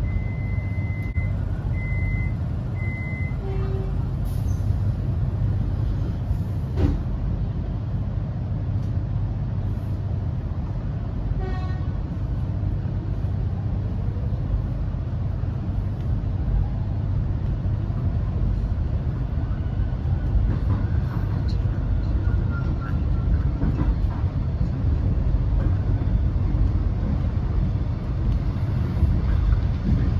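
Interior of an X'Trapolis electric train: three short high beeps of the door-closing warning, then the train pulls away from the station. A steady low rumble of wheels and running gear follows, with a faint traction-motor whine rising as it picks up speed.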